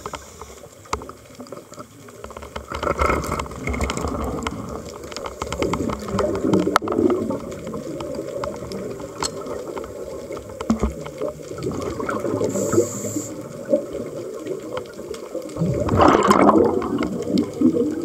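A scuba diver's regulator heard underwater: exhaled air bubbling out in repeated bursts over a steady murky underwater noise, with the loudest burst near the end.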